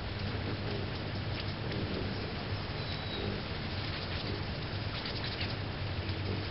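Hummingbirds at a feeder: a steady low hum of wings, broken by scattered short, sharp chips and clicks and one brief high, thin whistle about three seconds in.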